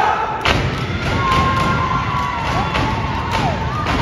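A step team stomping and striking in unison on a stage floor, a dense run of heavy thuds starting about half a second in, with audience whoops and cheering over it.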